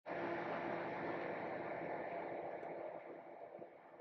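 Steady room noise: a soft hiss with a faint low hum, fading down toward the end.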